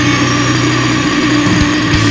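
Heavy metal music: a held, distorted guitar chord drones steadily, with drum hits coming back in near the end.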